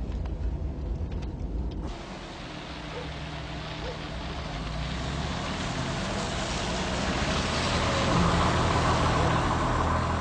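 A car's engine rumbling low, then about two seconds in a steady hiss of tyres on a wet road starts abruptly over the engine, growing louder as the car approaches.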